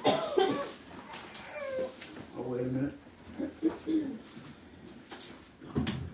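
A few brief, indistinct vocal sounds from people in a small room, with no clear words, and a short thump near the end.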